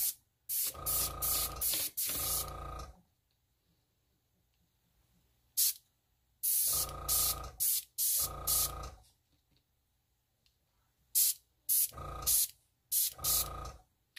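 Airbrush giving short, hard blasts of air to push wet ink drops across the paper, about eight bursts of half a second to a second and a half each with gaps between. Each burst is a hiss with a steady whistling tone in it.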